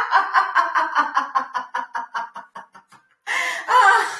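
Woman laughing hard on purpose in a laughter-yoga exercise: a long run of rapid ha-ha-ha pulses that fades out over about three seconds, a short break for breath, then a fresh loud burst of laughter near the end.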